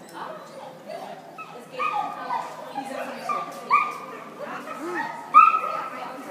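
Dog yipping and whining in excitement while running an agility course: a string of short high-pitched yips, the loudest near the end.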